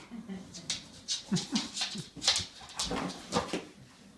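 A bulldog biting and shoving a rubber balloon across a wooden floor: an irregular run of sharp taps, squeaks and claw clicks, with a few short whimpers and grunts from the dog.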